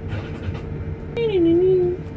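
A steady low hum and rumble, with a person's voice drawing out one long sound for the last second, falling in pitch and then holding; the voice is the loudest sound.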